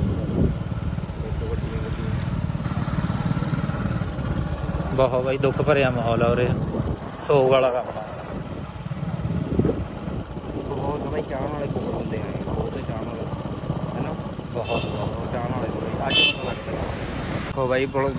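Motorcycle engine running steadily as it rides along a road, with voices of people talking over it and two short high-pitched sounds near the end.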